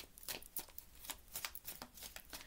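A deck of cards shuffled by hand: a quick, irregular run of soft clicks and flicks.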